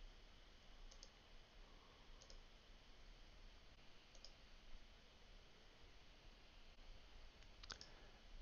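Near silence: room tone with a few faint computer mouse clicks spread through it.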